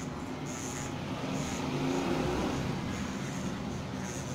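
Corded electric hair clippers running with a steady buzz during a haircut.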